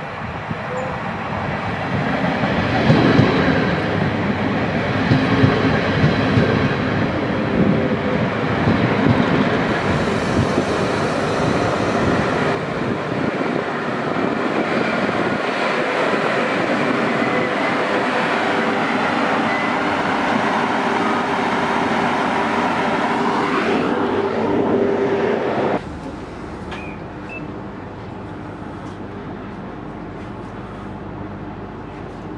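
Ganz-MÁVAG BVmot diesel multiple unit arriving at the platform, its diesel engine and running gear growing loud from about two seconds in as it draws alongside and staying loud and steady. About 26 s in the sound drops suddenly to a quieter steady hum inside the carriage.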